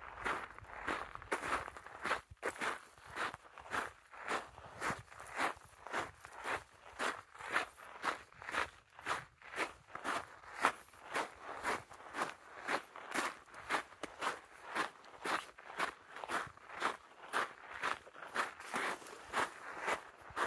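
A hiker's footsteps on a dark volcanic gravel path at a steady walking pace, about two steps a second.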